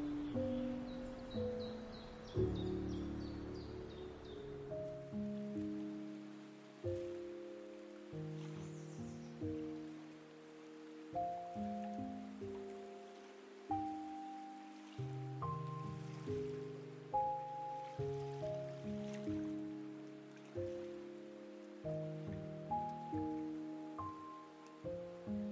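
Background music: a gentle melody of struck notes that each die away, over a steady lower line in an even rhythm.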